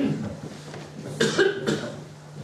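A person coughing, in short bursts, the loudest a little over a second in, over a steady low hum.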